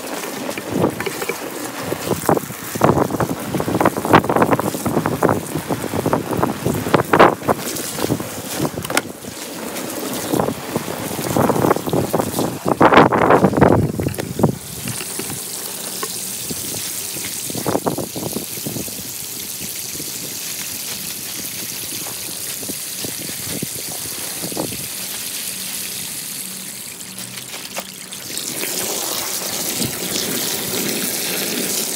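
Water from a garden hose pouring onto the vinyl floor of an Intex inflatable pool as it fills. Uneven and splashy for about the first half, then a steady hiss of the stream hitting the shallow water.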